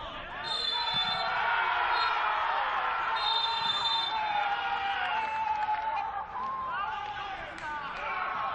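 Referee's whistle blown for full time: two blasts a few seconds apart, with a short peep between. Under them, players and staff shout and cheer.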